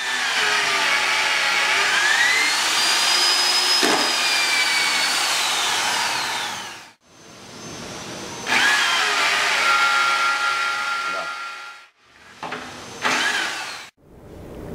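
AGP T14 450 W electric tapping machine running as it cuts threads into holes in a metal plate, its motor whine gliding up and down in pitch as the load changes. There are three separate runs, the first about seven seconds long, each cutting off abruptly.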